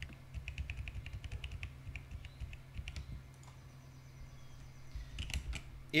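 Typing on a computer keyboard: a quick run of keystrokes for about two and a half seconds, a pause, then a few more keystrokes near the end.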